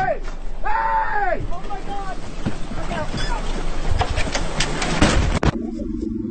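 Men shouting loudly on a fishing boat, long drawn-out calls. Then a loud rushing noise with a clatter of knocks builds up and cuts off abruptly near the end.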